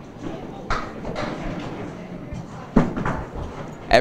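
Candlepin bowling: a small hand-held ball thrown down a wooden lane, with a few sharp knocks of ball and wooden pins, the loudest near the end as the ball reaches the pins. A crowd talks in the background.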